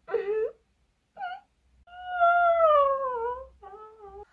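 A young woman's wordless vocal reaction, gushing and overcome rather than in distress: short squeaks, then a long whimper that falls steadily in pitch, and another short squeak near the end.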